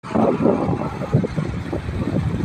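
Outdoor background noise: a low, uneven rumble with no clear voice or tone in it.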